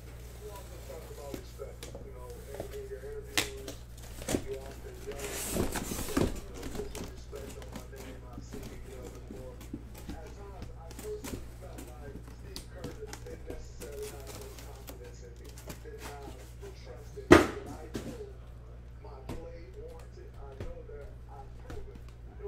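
Cardboard shipping case being opened and handled: scattered clicks and knocks, a scraping, rustling stretch about five seconds in, and one sharp thud about seventeen seconds in, as the case is cut open and the boxes inside are moved.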